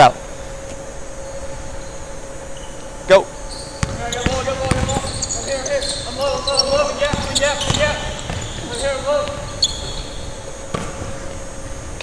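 Basketball bouncing and thudding on a hardwood gym floor during live drill play, in an echoing hall. One sharp, loud thump comes about three seconds in, followed by a run of quieter bounces.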